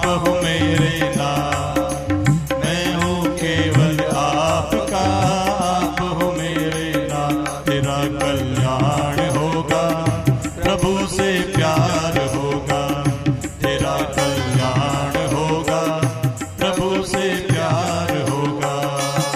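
Hindi devotional bhajan music: a melody wandering over a steady held drone, with low drum strokes beneath. The deepest bass drops out near the end.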